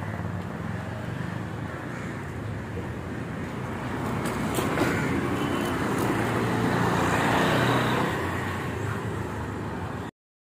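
Street traffic running steadily, with a vehicle growing louder between about four and eight seconds in as it passes close by.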